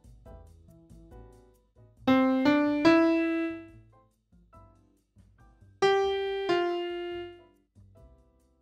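Piano notes played on a keyboard to enter a melody: three quick notes rising in pitch about two seconds in, the last held and fading, then two more notes near six seconds that ring out.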